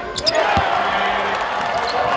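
A basketball bouncing on the hardwood court after dropping through the net, with two sharp bounces in the first second. Arena crowd noise and voices sound throughout.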